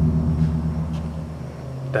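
A steady low mechanical drone made of several held low tones, fading somewhat about a second and a half in.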